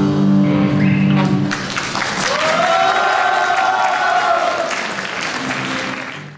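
Guitars hold a final chord that stops about a second and a half in, followed by an audience clapping, with one long cheer rising and falling over the applause.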